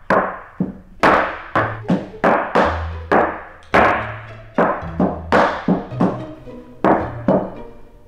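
A wooden gavel banging again and again on a wooden bench, about a dozen hard, uneven strikes, over background music with a low bass line.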